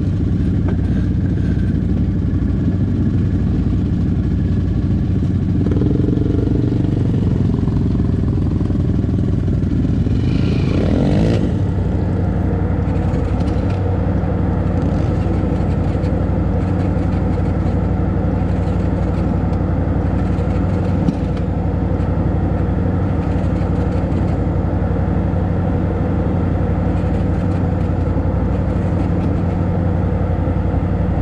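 Off-road vehicle engine idling steadily. About ten seconds in, the engine pitch rises briefly and falls back. About ten seconds after that there is a single sharp click.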